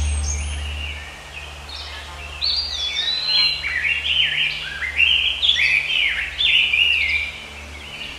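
A bird calling in a quick run of short, chirping notes that rise and fall in pitch, starting about two seconds in and going on for about five seconds, over a low steady hum.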